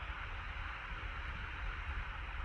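Steady low background noise with a low rumble underneath: room tone picked up by the microphone.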